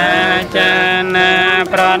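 A man chanting a Khmer Buddhist verse in long, held melodic phrases, with short breaks for breath about half a second in and again near the end.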